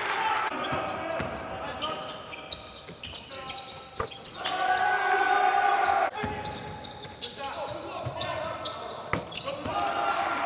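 Basketball game sounds on a hardwood court: the ball bouncing, sneakers squeaking in short high chirps, and voices calling out, with sharp knocks about four, six and nine seconds in.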